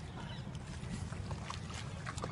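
Water sloshing and lapping around a man wading chest-deep in a river, over a steady low rumble.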